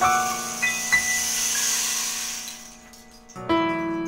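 Digital piano chords ringing under a high cymbal wash that dies away. The music falls to a lull about three seconds in, and a new low chord is struck about half a second later.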